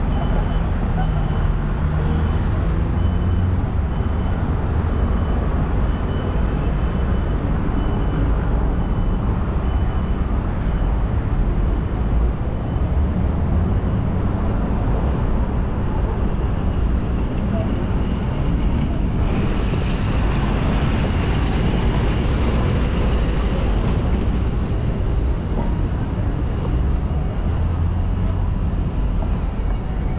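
City street ambience: steady road traffic noise with a deep low rumble. A faint high beep repeats about once a second through the first half.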